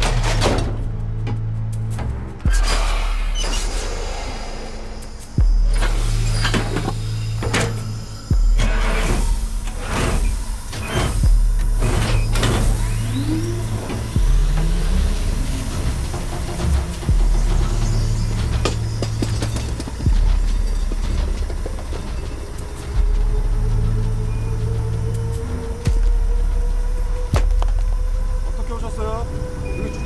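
Film soundtrack: a suspense score with a deep bass pulse about every three seconds. Sharp clicks and knocks are scattered over it in the first half, and sustained high tones join in the second half.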